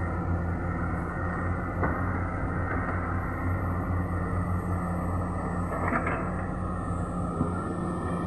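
Diesel engines of several Komatsu hydraulic excavators running, a steady low hum, with a couple of faint knocks about two and six seconds in.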